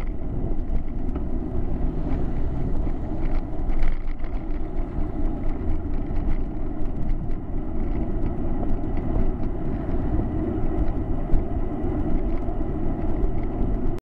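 Wind and road rumble on a bicycle-mounted camera's microphone while riding along, with scattered small clicks and rattles.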